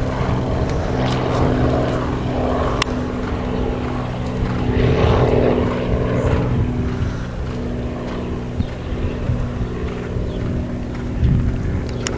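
A motor running with a steady low hum that holds one pitch throughout, with a single sharp click about three seconds in.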